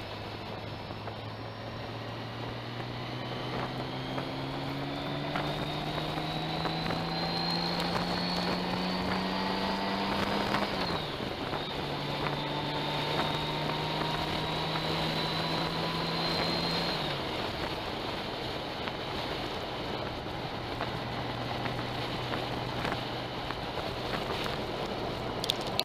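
Honda Goldwing motorcycle engine pulling up through the gears: its pitch climbs steadily for several seconds, drops at an upshift about halfway through, climbs again, then drops at a second shift and settles to a steady cruise. Wind noise on the microphone runs underneath.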